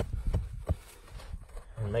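A few sharp strikes of a hand digging tool chopping into the dirt at the bottom of a trap bed, gouging out a divot for the trap chain.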